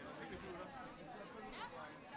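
Faint, indistinct chatter of several voices talking over one another, with no words clear.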